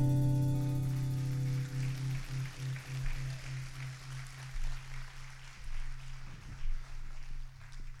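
A live band's final chord ringing out: the higher notes die away within the first second, while a held low note wavers and slowly fades. Audience applause runs faintly underneath.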